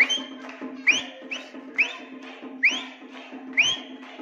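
Short rising whistles, five in a row about a second apart, each sweeping up in pitch, over crowd noise and a steady low hum.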